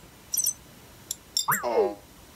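Living.AI EMO desktop robot pet making its electronic sounds: a few short high chirps, then a pitched sound falling steeply in pitch near the end. This is the noise it makes when it has not understood what was said, and it makes the same noise when its network connection is not working.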